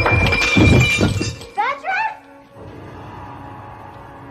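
Glass shattering and a lamp crashing over, with heavy thuds, through the first second or so. A few short rising cries follow near the middle, then quiet background music.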